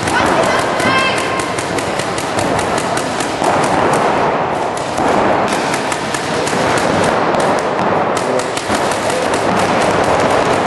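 Several paintball markers firing rapid strings of shots, a dense run of sharp pops with no real break, over a background of voices.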